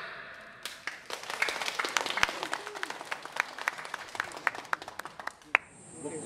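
Audience applause after a stage performance: scattered, separate hand claps from a small crowd, starting about half a second in and dying away near the end, the last clap louder.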